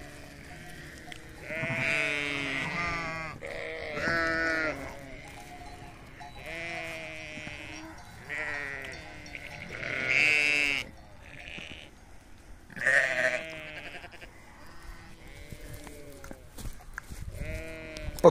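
A ewe and her newborn lamb bleating, about eight separate calls of a second or so each, with a wavering, quavering pitch.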